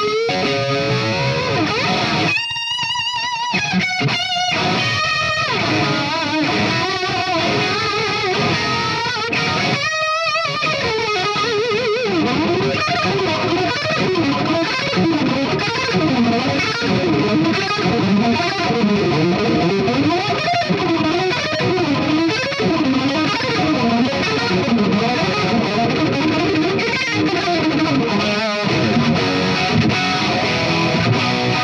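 Washburn N4 electric guitar with a FU-Tone big brass block and noiseless tremolo springs in its Floyd Rose bridge, played through an amp in a continuous run of notes and phrases, with wavering notes a few seconds in and again about ten seconds in.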